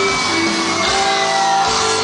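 Loud live pop-punk band playing, with electric guitars and held vocal notes, and shouting over it, heard from within the crowd in a large hall.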